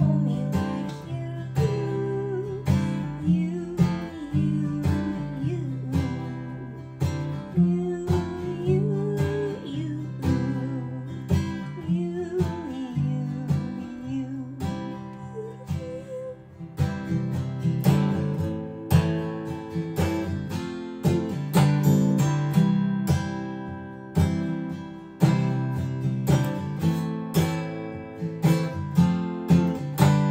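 Guitar band music: strummed guitar chords over steady low notes, with a sliding melody line on top that drops out about halfway through.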